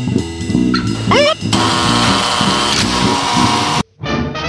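Music with a rhythmic plucked bass line. About a second in, a wavering tone glides upward. Then a bright hissing wash sits over the music and cuts off abruptly near the end.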